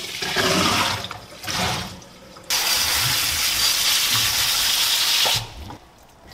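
Water from a kitchen tap running into a sink: two short splashes in the first two seconds, then a steady stream that starts abruptly about two and a half seconds in and cuts off near the end.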